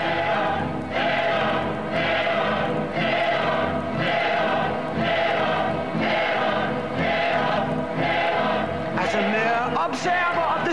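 A chorus of voices chanting a short phrase in unison, repeated about once a second over musical accompaniment.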